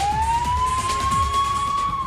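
Police car siren sounding one slow wail: the tone climbs, holds high, and begins to drop near the end.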